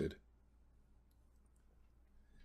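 A narrator's voice trails off at the very start, then a pause of near silence holding only a few faint clicks.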